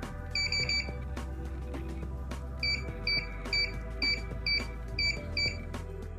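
Emtek electronic keypad lever lock's keypad beeping as its buttons are pressed. There is a quick triple beep near the start, then a string of single beeps about twice a second, one for each digit of the programming code as it is keyed in. Background music plays underneath.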